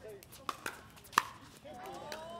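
Pickleball paddles striking the ball in a rally at the net: three sharp pops, the loudest just past a second in.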